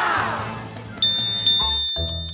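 Edited-in cartoon sound effects over background music: a shimmering sparkle at the start, then from about a second in a high steady beep and ticking, a clock effect marking time passing.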